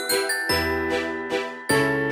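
The song's instrumental intro beat, before the rap vocals come in. Pitched keyboard notes are struck about three times a second over a deep bass note that enters about half a second in and again near the end. High ringing tones sound at the start.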